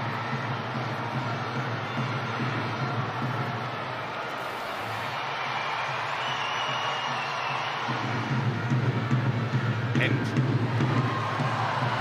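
Large football stadium crowd, a steady wash of cheering and chatter, growing louder about eight seconds in.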